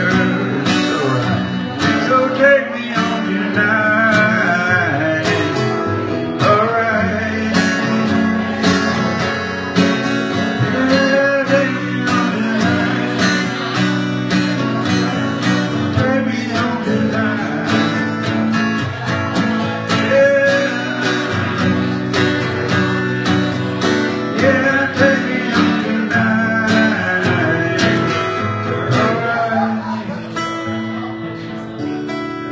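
A man singing with his own strummed acoustic guitar, a solo live performance picked up in a small room.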